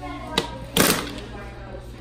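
Turn knob of a coin-operated capsule toy vending machine being worked: a short click, then a louder clunk of the mechanism about half a second later.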